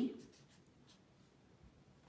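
Pen writing on lined notebook paper: faint, light scratching of the pen's strokes.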